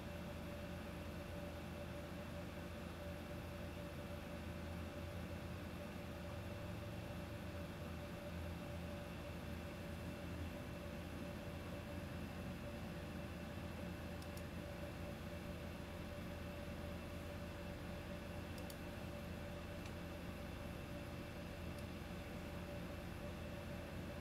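Steady room tone: a low hum and hiss with faint steady tones, broken by a couple of faint clicks past the halfway point.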